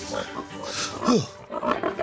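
A pig grunting, with its loudest call about a second in falling in pitch.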